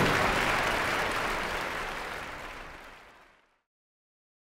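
Audience applause, fading out to silence about three seconds in.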